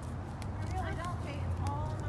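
A small child's voice, faint and high-pitched, making two short sounds over a steady low outdoor rumble, with a few light clicks.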